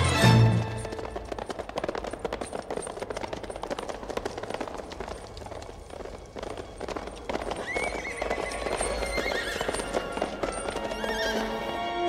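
A group of horses galloping, hooves clattering on stone, with a horse whinnying, under orchestral film-score music. A loud closing musical note ends just at the start.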